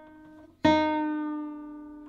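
A single nylon string of a classical guitar plucked and left ringing, fading away, then plucked again about two-thirds of a second in and ringing out, while its tuning peg is turned toward the player to lower the string's pitch.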